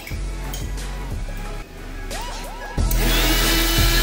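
Background music with a beat; about three seconds in, a loud, steady whirring noise starts over it: a laboratory blender with a stainless-steel jar starting up to crush turmeric leaves.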